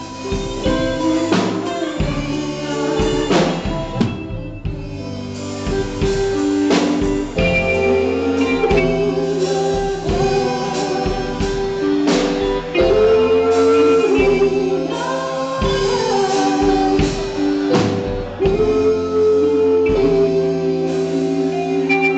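Live band playing: a woman singing through a microphone over electric guitar, bass guitar and drum kit, with keyboard, held notes and steady drum hits.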